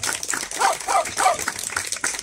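A small group clapping, with short repeated barks from a small dog, about three a second, sounding through the applause.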